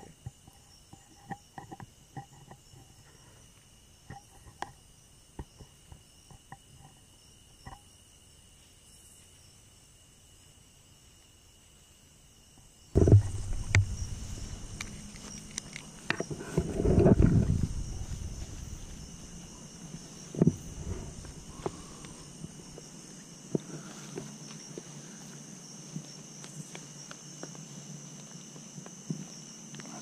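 Steady high chirping of night insects with a few faint clicks; about thirteen seconds in, a sudden loud low rumbling and crackling noise breaks in and runs for several seconds, the camera's audio going bad, before settling into a steadier, louder hiss under the insects.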